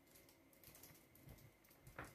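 Faint typing on a computer keyboard: a quick, uneven run of soft key clicks.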